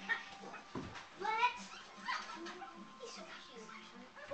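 A dog whimpering and yipping in short calls, the clearest a brief whine that rises and falls about a second and a half in.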